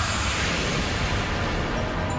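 A loud rushing hiss, strongest in the first second and easing off, over a steady low rumble: a dramatic smoke-burst or whoosh sound effect.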